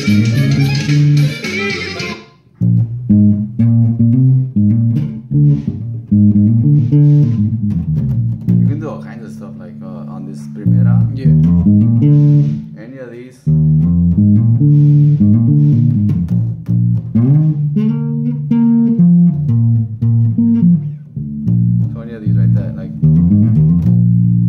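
Electric bass played fingerstyle through an amp, picking out a norteño bass line in runs of notes with short pauses. For the first two seconds a full band recording plays along, then cuts off suddenly.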